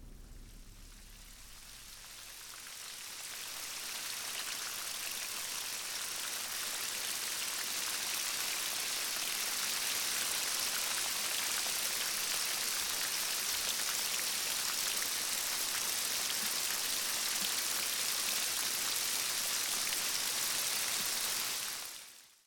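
Steady rain falling, fading in over the first few seconds and then holding level as an even, bright hiss.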